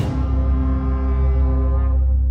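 Student brass band of trumpets, trombones and tuba holding one long low chord, its brighter upper notes fading over the two seconds.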